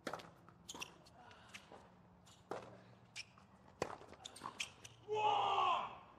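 Tennis point on a hard court: a serve struck at the start, then a rally of racket strikes on the ball, the clearest about two and a half and four seconds in, with lighter ball bounces and shoe squeaks between. Near the end, a voice calls briefly.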